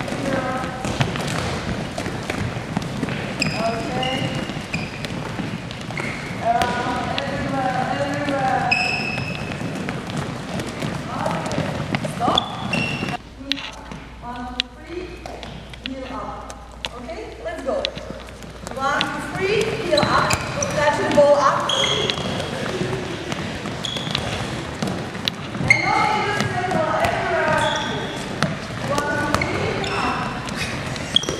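Several handballs bouncing on a hardwood gym floor as a group of players dribble while running, mixed with overlapping chatter and calls from the players in a large gym. The bouncing and chatter drop to a quieter stretch a little before halfway and build back up after.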